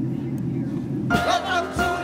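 Steady low rumble of an aircraft in flight, then voices singing held, wavering notes come in about a second in.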